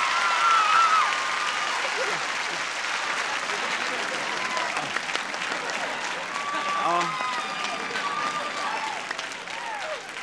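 Studio audience applauding and cheering a winning guess, slowly dying down, with a woman's high excited squeals at the start and short bursts of voices or laughter about seven and nine seconds in.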